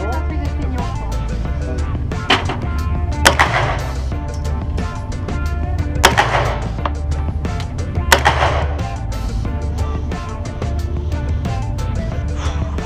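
Single gunshots from a submachine gun, four sharp cracks spaced a second to a few seconds apart, each ringing on briefly in the range, heard over background music with a steady bass beat.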